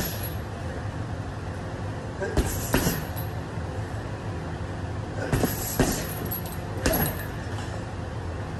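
Boxing gloves punching a chain-hung teardrop bag: punches land in quick pairs, three times, each with a jangle from the hanging chains, over a steady low hum.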